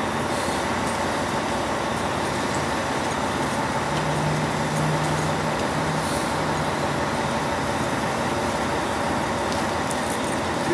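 Steady street traffic noise, with a large vehicle's low engine hum coming in about three and a half seconds in and fading out around seven seconds.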